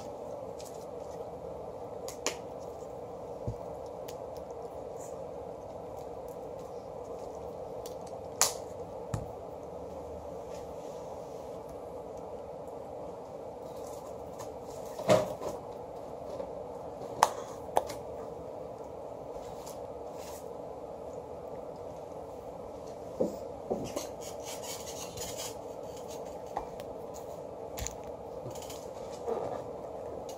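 Steady room hum with about a dozen scattered sharp taps and slaps of hands striking each other and the chest while signing in sign language; the loudest taps come a little past halfway.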